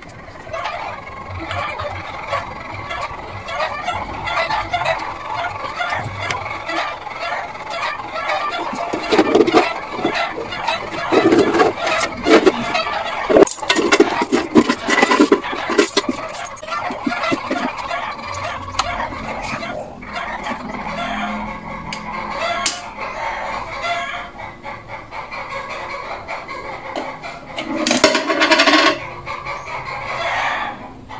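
Chickens clucking and calling throughout, with one loud call near the end. There is a run of sharp clicks and knocks around the middle.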